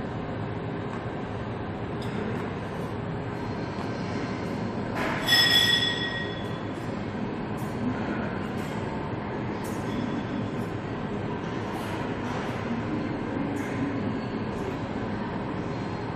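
Steady background noise of a gym, with one brief, louder high metallic ring about five seconds in.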